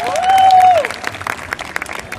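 Scattered applause from a small audience of individual clappers. In the first second one long cheering call rises, holds and falls away over the clapping.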